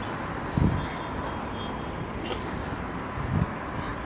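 Steady city street traffic noise from passing cars, with two short low bumps and a brief hiss partway through.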